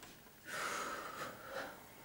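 A woman's deep, forceful breath, starting about half a second in and lasting about a second. It is involuntary breathing that she says runs by itself and that she cannot stop.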